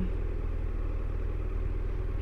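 BMW F700GS parallel-twin motorcycle engine running low and steady as the bike rolls slowly, an even low pulsing rumble.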